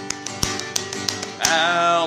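Acoustic guitar playing a country-style intro, with sharp knocks on the beat, the strongest about half a second in. Near the end a voice starts singing over it.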